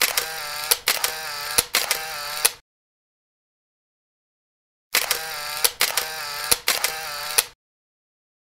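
An edited-in sound effect played twice in the same form, about two and a half seconds each time, with dead silence between. Each time it is three short pulses of a wavering, pitched tone, each marked by a sharp click.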